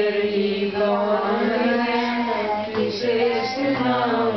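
A group of adult and child voices chanting Vedic mantras in unison, a continuous sung recitation without pauses.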